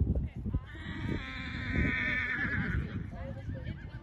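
A horse whinnying once, a long wavering high neigh lasting about two seconds, starting about half a second in, over a low rumbling noise.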